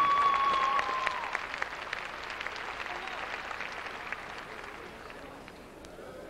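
Arena audience applauding at the end of a floor-exercise routine, the clapping slowly fading. A held final note of the floor music ends about a second in.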